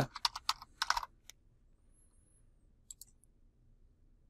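Typing on a computer keyboard: a quick run of keystrokes for about the first second, then a few single clicks near the three-second mark.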